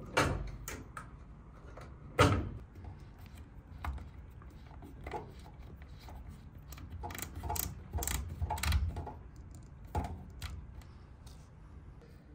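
Handling noise of a heavy power input cable being pushed up through a cable gland into a metal junction box: rubbing with scattered knocks and clicks, the sharpest knock about two seconds in and a run of clicks later on.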